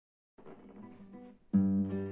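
Nylon-string classical guitar: a few quiet, scattered notes, then a full chord strummed about a second and a half in and left ringing.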